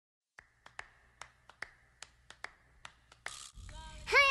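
About a dozen sharp clicks at uneven spacing. Near the end come a brief hiss and the start of a pitched sound.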